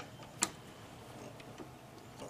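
A single sharp click about half a second in, then quiet room tone.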